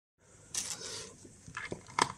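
Handling noise: brief rustling and scraping with a few light knocks as hands reach in, then a sharp click near the end as a screwdriver tip meets a plastic dosimeter case.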